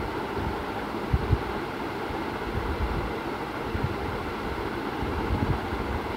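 Steady hiss and low rumble of background noise, with a couple of soft low bumps about a second in and a few fainter ones later.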